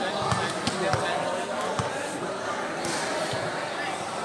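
A volleyball being struck or bounced, a few sharp uneven thuds in the first two seconds, over a steady background of voices.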